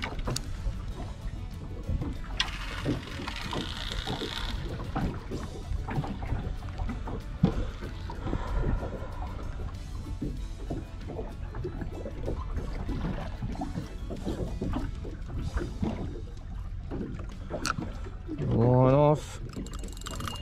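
Line being let out from a spinning reel by hand as a lightly weighted bait sinks, with scattered handling knocks over a steady low rumble. A short voiced sound comes near the end.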